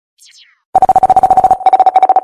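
A short, high falling zap, then a loud steady electronic tone chopped rapidly on and off in a fast stutter, a DJ mixtape sound effect.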